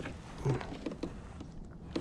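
Faint, scattered taps and knocks of a small bass being swung aboard and handled over a plastic kayak, with a short low voice sound about half a second in.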